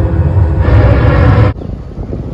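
Film soundtrack over cinema speakers, recorded in the hall: a loud, deep rumble with sustained music tones. It cuts off suddenly about one and a half seconds in, giving way to a quieter steady outdoor noise.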